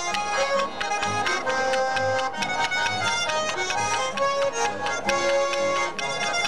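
Live Swiss folk polka played on Schwyzerörgeli (Swiss button accordions) with clicking spoons, guitar and double bass keeping a steady bass beat.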